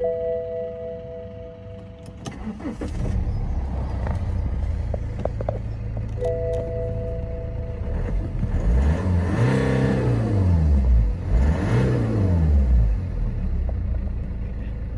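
BMW 3 Series 2.0 four-cylinder diesel engine starting about two and a half seconds in, after a two-tone dashboard warning chime, then idling. The chime sounds again, and the engine is then revved twice, each rev rising and falling back to idle.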